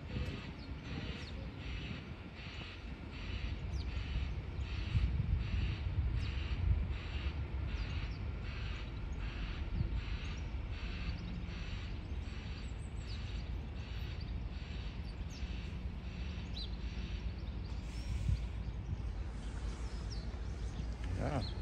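Outdoor town ambience: a steady low rumble of wind and distant traffic, with a soft rhythmic sound repeating about twice a second for most of the stretch.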